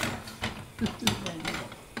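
A few clinks and knocks of pans and utensils at a gas hob as crêpes are turned and lifted: one sharp knock at the start, a couple more about a second in and another near the end.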